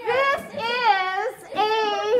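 A high voice singing drawn-out 'aah' notes, three held notes in a row with the pitch wavering and gliding.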